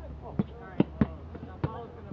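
A basketball dribbled on an outdoor hard court: four sharp bounces at an uneven pace, with players' voices calling out between them.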